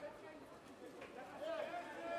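Faint distant voices calling out, over low background chatter, with a short rise-and-fall call between one and two seconds in.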